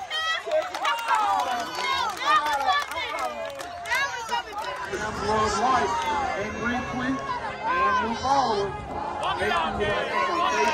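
Many overlapping voices talking and calling out at once: crowd chatter.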